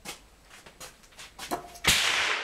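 Light clicks of brass cartridges and a pistol magazine being handled on a bench, then near the end a single sharp crack with a trailing echo: a gunshot from elsewhere on the range.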